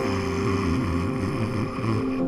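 A low, wavering rumble with a faint held tone above it: an underwater ambience effect.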